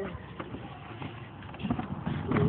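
The roller-skate and scooter wheels of a homemade wooden cart starting to roll on pavement: a few faint clicks, then a low rumble building near the end.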